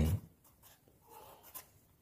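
Pencil writing briefly on a paper workbook page: a faint scratch of lead on paper about a second in, ending in a small tap.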